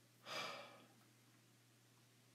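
A man's short sigh, a single noisy breath of about half a second, a quarter of a second in.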